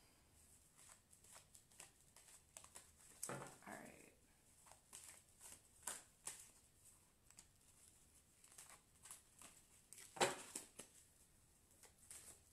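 A tarot deck being shuffled by hand: quiet, irregular soft clicks and riffles of the cards, with a louder sharp slap about ten seconds in. A brief murmured voice comes in about three and a half seconds in.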